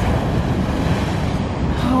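Heavy Atlantic surf breaking onto a black sand beach and washing around stranded blocks of glacier ice: a steady, loud rush with a deep rumble.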